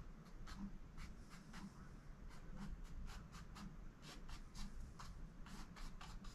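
Fine paintbrush tip tapping and dabbing on a canvas, a quick, irregular run of small ticks as dots of paint are set down.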